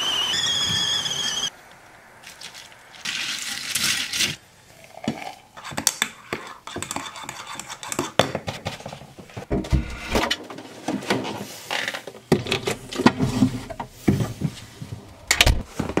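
Stainless-steel stovetop whistling kettle whistling at the boil, a steady high tone that steps up slightly in pitch, then stops suddenly about a second and a half in. A second of pouring follows, then a spoon clinking and scraping in a ceramic mug and against crockery.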